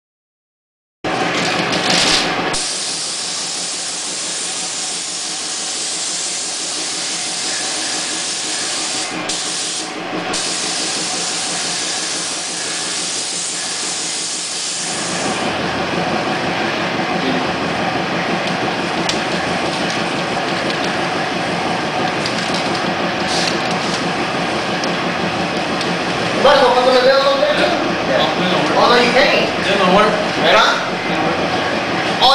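Steady rushing hiss of air, the kind heard in an automotive paint booth. It changes tone about halfway through, turning duller and fuller. Voices come in near the end.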